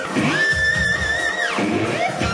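Electric guitar played solo-style: a high note held for about a second with a slight waver, then sliding down, over fast pulsing low notes.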